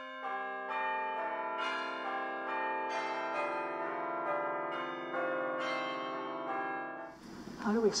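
Church bells ringing, one strike after another, their long tones overlapping and building up. A man's voice begins near the end.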